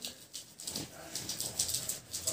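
Light rustling and crackling of a bedsheet strewn with broken thermocol (styrofoam) bits as children shift about on it, a quick run of short crackles.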